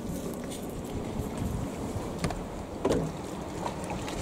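Motor cruiser under way: the steady low noise of the boat running through the water, with wind on the microphone. Two short knocks come a little past two seconds in and again near three seconds.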